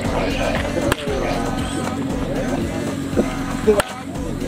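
A single sharp crack of a bat striking a baseball on a swing near the end, heard over background music and voices.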